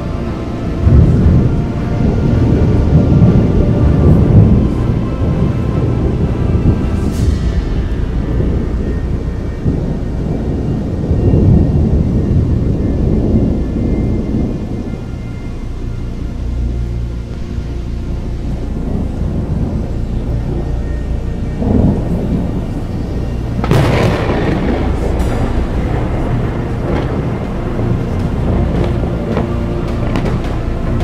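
Thunder rolling and rumbling, with a sharper crack about three-quarters of the way through, mixed with background music.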